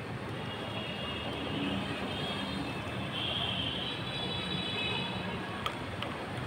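Steady outdoor town ambience: a continuous wash of noise over a low hum, with faint high thin tones that grow brighter about three seconds in, and a single sharp click near the end.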